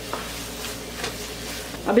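A wooden spatula stirring thick coconut halwa in a nonstick pan, with a soft sizzle from the ghee that has separated out: the sign the halwa is done.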